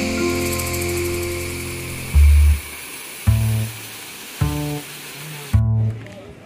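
Background music: held chords over a steady hiss, then from about two seconds in, deep bass notes about once a second.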